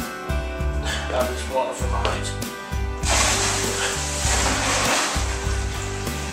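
Cold water pouring into a plastic fermenting bucket to top up the wort, a steady rush that grows loud about halfway through. Background music with guitar and bass plays under it.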